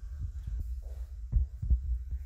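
Microphone handling noise: irregular low thumps and rumble, with two sharper knocks past the middle.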